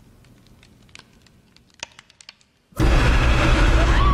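Hushed room tone with a few faint ticks, then about three-quarters of the way in a sudden, loud jump-scare sting from a horror film score: a blaring musical hit, heaviest in the bass, that cuts in at once and holds.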